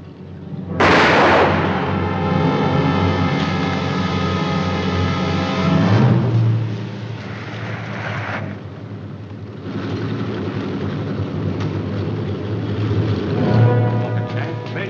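A single pistol shot about a second in, followed by an orchestral film score swelling in. Car engines run under the music near the end.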